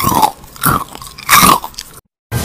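Eating sound effect of a bowl of strawberries being wolfed down: three loud, crunchy chomps about two-thirds of a second apart.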